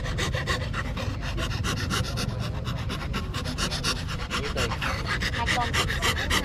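A hand fret saw with a fine steel blade cuts letters out of a thin plate of gáo vàng wood, rasping in rapid, even up-and-down strokes, several a second.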